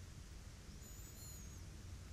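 Near silence: a faint low hum and hiss of room tone, with a faint high-pitched tone for about a second in the middle.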